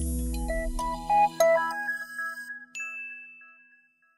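Closing jingle of a TV broadcast: a deep low hit, then a quick run of bright chime-like notes, and a last high ringing note that fades away.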